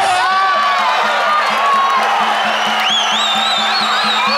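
Muay Thai ring music: a wavering Thai oboe (pi java) melody over a fast, even drum beat, with the crowd shouting over it.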